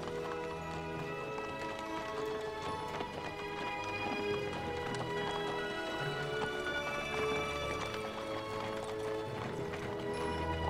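Film score music with sustained tones, over the hoofbeats of a two-mule team pulling a covered wagon and a horse with a rider going by on a dirt street.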